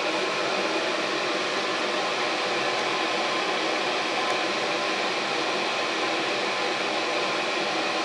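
Exhaust fan of a homemade fume vent hood running steadily, drawing air through the hood to carry away chemical fumes; an even, constant rush with a faint steady hum.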